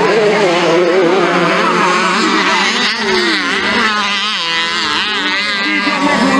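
Several two-stroke dirt bike engines racing together, their pitch repeatedly rising and falling as the riders open and close the throttle, most plainly in the second half.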